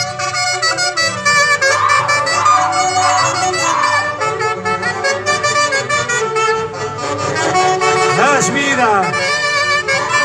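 Andean folk orchestra led by saxophones playing a huaylarsh: a lively run of held reed notes over a steady beat.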